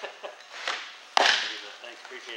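A softball pitch smacking into the catcher's leather mitt: one sharp, loud pop a little over a second in that dies away quickly in the cage, with a few softer clicks and scuffs before it.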